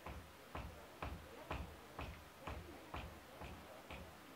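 Soft, even clicks at about two a second, a count-in keeping time at the song's tempo just before the band starts.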